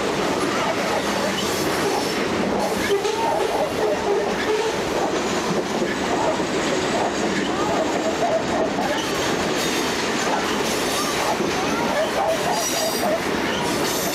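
Loaded coal hopper cars rolling past: a steady rumble of steel wheels on rail, with wheel clatter and wavering flange squeal throughout. A higher squeal comes near the end.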